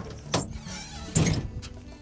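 A heavy archery bag target being dragged and slid across a pickup truck's bed: a knock about a third of a second in, a rustling scrape, then a louder thump and scrape just past a second.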